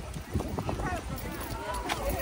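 Background chatter of people talking, with a few short clicks and taps, over a steady low outdoor rumble.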